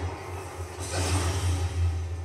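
Low steady rumble with a rushing, hissing noise that swells about a second in, from the soundtrack of an anime episode playing back.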